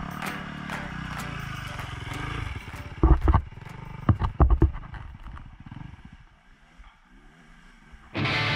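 A trail motorcycle's engine running as the bike approaches and goes by, with a few loud low thumps around three and four seconds in as it passes, then fading away.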